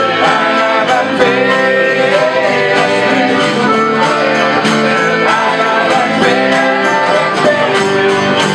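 Live acoustic band music: a piano accordion holding sustained notes over a strummed acoustic guitar keeping a steady rhythm.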